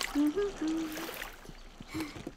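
A cartoon child's short hummed vocal sound, rising a little and then held for under a second, over a faint trickle of water from a garden hose slowly filling a paddling pool.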